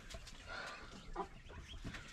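Young hens clucking faintly, a few short calls.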